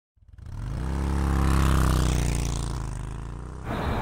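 A motorcycle engine's low note swells in from silence, peaks after about a second and a half, then fades away.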